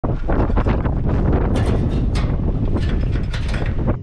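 Loud wind buffeting the microphone, a steady deep rumble, with irregular mechanical rattling and crackling over it. It cuts off abruptly at the end.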